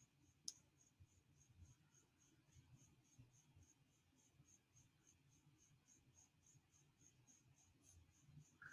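Near silence: room tone, with one faint mouse click about half a second in.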